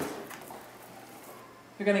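Cardboard rustling and scraping as a boxed item is pulled out of a cardboard shipping carton, fading away over the first second or so. A woman starts speaking near the end.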